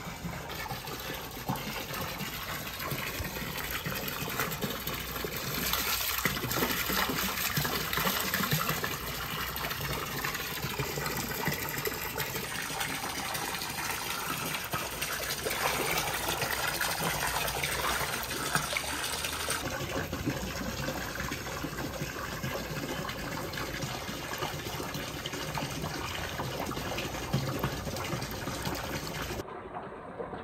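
Hot spring water pouring from a bamboo spout into a rock-lined outdoor bath, a steady splashing gush into the pool.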